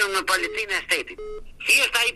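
An anonymous male witness's disguised, pitch-altered voice speaking over a telephone line. About a second in, the speech breaks off for a short steady beep-like tone, then resumes.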